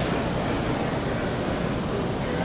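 Steady background din of a large exhibition hall: an even, noisy wash with no distinct events.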